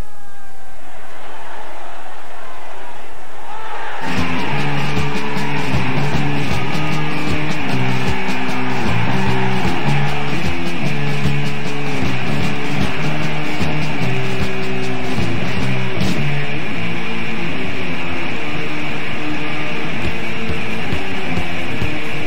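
Oi! streetpunk band with distorted electric guitars, bass and drums crashing in about four seconds in and playing an instrumental intro, after a few seconds of noisy lead-in with sliding tones.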